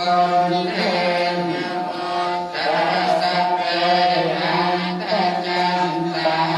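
Buddhist chanting: a low voice holding long, drawn-out notes on a steady pitch, with a short break about two and a half seconds in.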